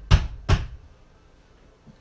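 Soap loaf mold filled with hot process soap being tapped down on the table to settle the soap into the mold: two heavy thumps a little under half a second apart in the first second.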